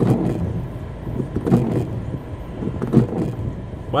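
Inside a car stopped in heavy rain: a steady cabin rumble with rain on the car, a windshield wiper sweeping across near the start, and a few short knocks about every second and a half.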